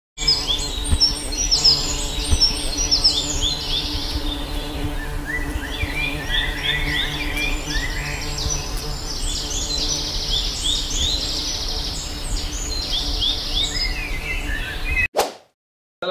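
Bees buzzing steadily, with birds chirping in quick bursts over the hum. Both stop suddenly about a second before the end.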